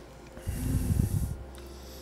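A person with a mouthful of pretzel bite hums a closed-mouth "mm" with breath puffing through the nose, starting about half a second in and lasting about a second.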